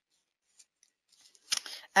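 Near silence for about a second and a half, then a few short mouth clicks and a breath just before a woman starts speaking.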